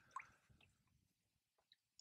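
Near silence, with one faint brief click just after the start.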